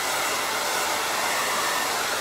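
Handheld blow dryer blowing steadily, drying a first layer of white paint on a small wooden surfboard.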